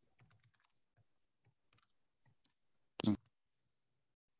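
A quiet pause on a video call, with faint scattered clicks, then one short vocal sound about three seconds in.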